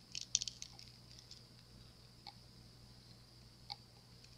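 Silicone mold being flexed and peeled off a cured epoxy resin hippo casting: a quick cluster of small crackles and clicks near the start, then two single clicks later.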